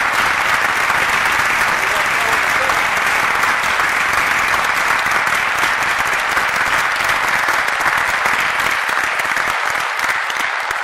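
Audience applauding, a dense steady clapping that begins to thin out near the end.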